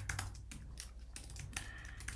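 Computer keyboard typing: a run of key clicks at an irregular pace, faint.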